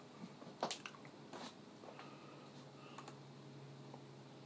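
A few faint clicks and taps from a computer keyboard, the loudest about a second in, over a low steady hum that comes in halfway through.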